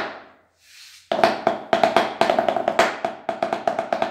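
Wooden drumsticks playing a fast, accented tarola (banda snare drum) pattern on a towel-covered surface. It starts about a second in, after a short pause.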